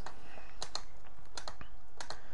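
A few sharp, scattered clicks from operating a computer, about six in two seconds, over a steady faint low hum.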